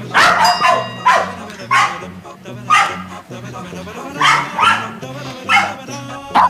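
Recorded domestic dog giving about seven short, sharp barks at irregular intervals, over a low background music bed. The bark was recorded as the dog was about to go for a walk: excited, anticipatory barking.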